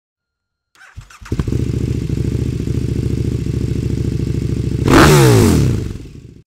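Motorcycle engine starting about a second in and running steadily, then revved once about five seconds in: the loudest moment, with a rush of exhaust noise before the revs fall away.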